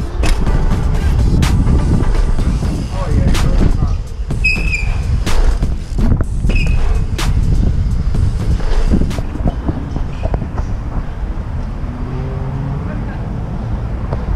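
BMX bike ridden over tiled paving and a curved tiled wall ramp: a steady rolling rumble of the tyres with wind on the microphone, broken by sharp clacks from the bike every second or two and a couple of brief squeaks.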